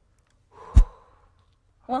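A man's short, strained exhale as he squeezes a hand-grip strength tester, ending in one sharp low thump about three-quarters of a second in.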